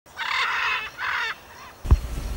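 Two harsh bird calls, the first about two-thirds of a second long and the second shorter, then a short low thump just before the end.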